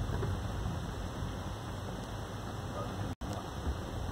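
Steady low rumble and hiss of engine and road noise inside a Volkswagen car's cabin as it moves slowly through city traffic; the sound cuts out for an instant a little over three seconds in.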